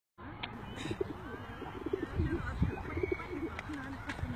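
Pigeons cooing: low, wavering calls repeated throughout, with fainter higher chirps of small birds behind them.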